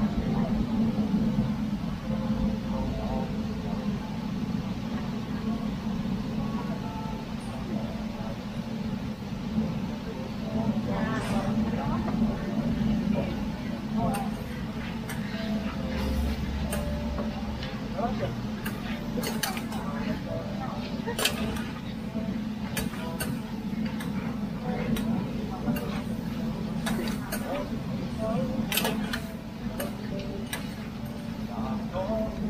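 Metal spatulas scraping and clanking on a flat-top griddle as a heap of sliced meat is turned and chopped. The sharp strikes come thick in the second half, over a steady low hum.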